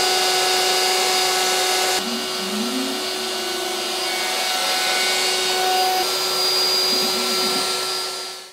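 DeWalt router spinning steadily on a CNC machine as it cuts a template, with a dust extractor running alongside: a continuous whine over a rushing noise. The sound shifts abruptly about two seconds in.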